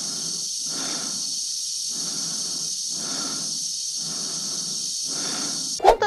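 An astronaut's slow, regular breathing heard inside a space helmet, about one breath a second, over a steady high hiss. It cuts off suddenly just before the end.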